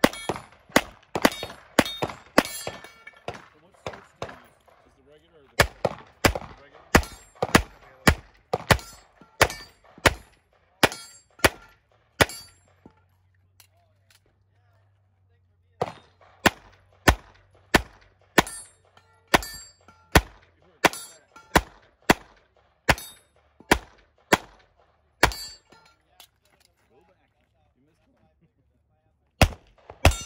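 A handgun fired in quick strings of shots, about two a second, with metallic clangs and rings from steel targets being hit. The firing breaks off for a few seconds three times, once for about three seconds partway through.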